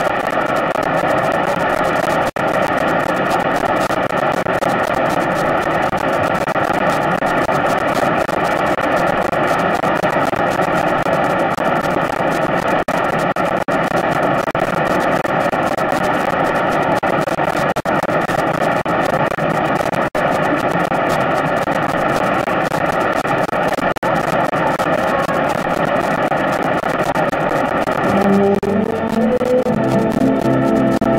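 Studio audience applauding in a steady, dense wash of clapping, heard on an old broadcast recording. About two seconds before the end, an orchestra starts playing over it.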